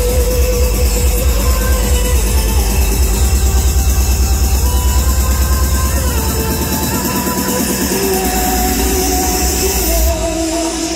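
Electronic dance music from a live DJ set, played loud over a venue PA system: a steady pounding kick drum under a synth melody. The kick drum drops out about six seconds in, leaving the melody.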